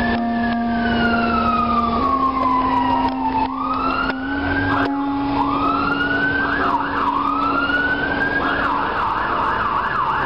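Emergency vehicle siren in a slow wail, rising and falling over several seconds, then switching to a fast yelp of about three sweeps a second near the end. Under it a low steady tone holds, stepping up in pitch twice.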